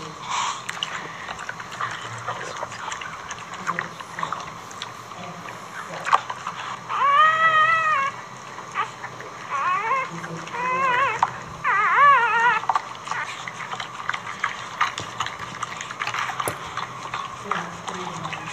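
Newborn Boxer puppy crying: four high, wavering squeals, the first about a second long and the next three shorter and closer together near the middle. Under them, soft licking and rustling on the cushion as the mother Boxer cleans the wet newborns.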